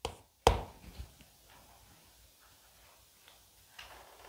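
Chalk tapping sharply on a blackboard two or three times in the first second as a word is finished off with a dot, then near quiet with a couple of faint ticks near the end.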